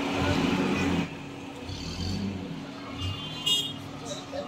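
Outdoor street noise with a motor vehicle engine running at a steady hum. A short high-pitched tone sounds about three and a half seconds in.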